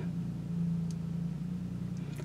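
Steady low hum of a car engine idling, heard from inside the cabin.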